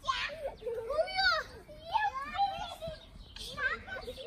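Young children's high-pitched voices, calling out and squealing in short bursts as they play.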